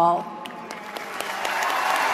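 Audience applause that starts just as a woman's last spoken word ends and builds up over about a second and a half, then holds steady.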